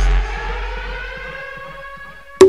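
A siren-like tone of several parallel pitches, gliding slowly upward and fading away after the beat drops out, a transition effect in the music mix.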